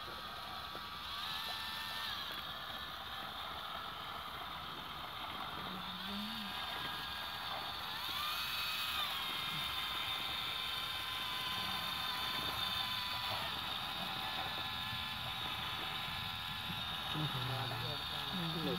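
Small battery-powered electric motors of two homemade toy tractors whining steadily as they strain against each other in a tug-of-war, the whine stepping up and down in pitch a few times.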